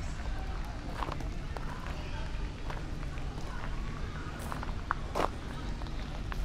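Outdoor city-square ambience: distant, unintelligible voices of passers-by and footsteps over a steady low rumble of traffic, with a short sharp sound about five seconds in.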